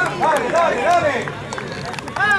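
Several voices shouting and cheering over one another in celebration of a goal, with a few sharp claps or knocks among them.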